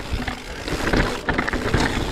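Mountain bike clattering down a rocky singletrack: tyres rolling over loose stones, with frequent irregular knocks and rattles from the bike as it hits rocks.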